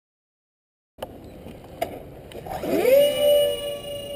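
Electric motors of a radio-controlled A-10 Warthog model spinning up: after a second of silence, a whine rises quickly in pitch about two and a half seconds in, then holds steady.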